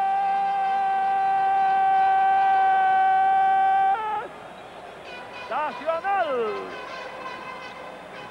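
A long, loud, steady horn note that cuts off suddenly about four seconds in, followed by two shorter calls that rise and fall in pitch.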